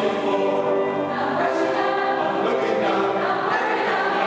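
Mixed choir of men's and women's voices singing in sustained chords, the held notes changing about a second in.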